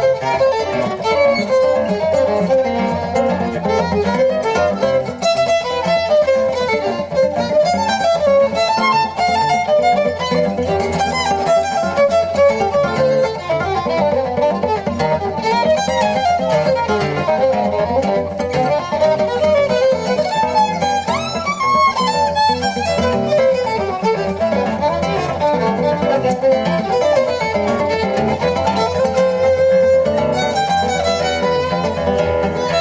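Jazz violin playing a busy melody of quick, running notes, with guitar accompanying underneath.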